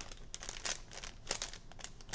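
Plastic blind-bag wrapper crinkling as it is handled, a series of irregular short crackles.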